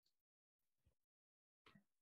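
Near silence: the sound is gated down to almost nothing, with only a couple of barely audible faint traces near the end.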